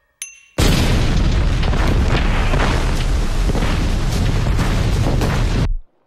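Sea-mine explosions: a short ringing ping, then a loud, continuous rumbling blast of about five seconds that stops abruptly.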